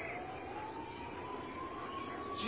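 Faint siren-like tone gliding slowly upward in pitch over a low hiss.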